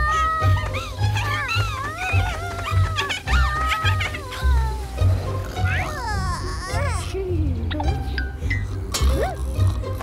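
Cartoon soundtrack: background music with a pulsing bass beat under high, wordless cartoon-character voices crying out and chattering.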